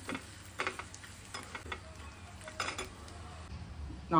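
A steel spoon stirring in a small steel tempering pan, with a few scattered clinks against the metal, over faint sizzling oil with dried red chillies.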